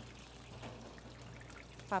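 Faint, steady background noise of a commercial kitchen with a low, constant hum.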